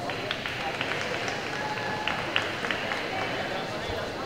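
Hall ambience in a busy gymnastics venue: indistinct voices murmuring, with scattered short sharp knocks all through.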